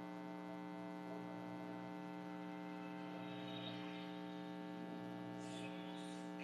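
Steady electrical hum, a stack of even unchanging tones, low and constant.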